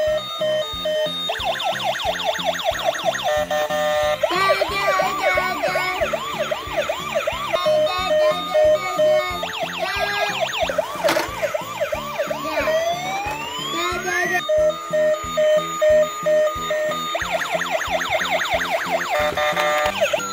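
Battery-powered toy ambulance's electronic sound module playing siren effects: fast repeating wails and yelps whose pattern changes every few seconds, with one long rising sweep past the middle. The sirens sit over an electronic tune with a steady beat.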